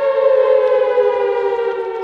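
Siren sound effect played as a spoiler-warning signal: one loud, held wailing tone that dips slightly in pitch near the end.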